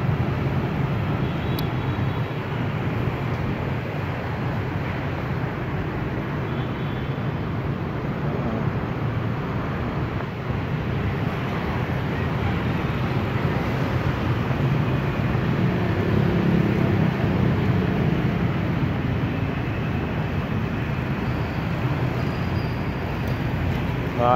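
Steady traffic noise of a busy city street, mostly motorbikes passing.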